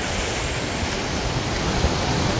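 Ocean surf washing up the beach, a steady rushing wash, with wind gusting over the microphone.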